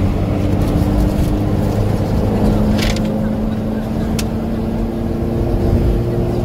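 Car engine and road noise heard from inside the moving car at a steady cruise: a low rumble with a steady engine drone, and a short click about four seconds in.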